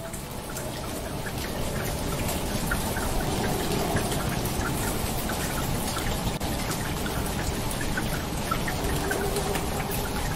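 Rain falling steadily, with many separate drops heard in it; it swells over the first two seconds and then holds even.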